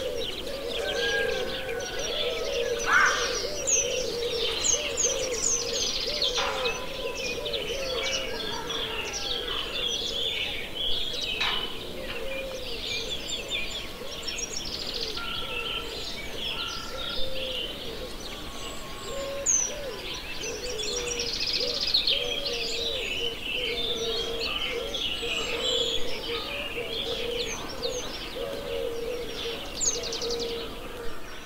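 A dense bird chorus of many overlapping short calls and songs, with thin high falling whistles of the kind Eurasian penduline tits give, over a steady chain of low repeated notes.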